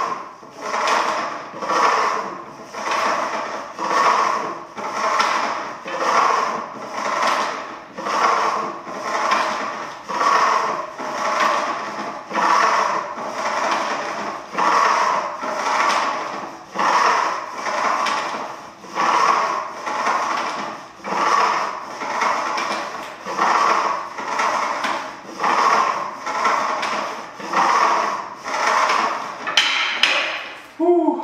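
Cable machine's pulley and weight stack working through glute kickback reps. It makes a rubbing, sliding sound that swells and fades about once a second with each rep.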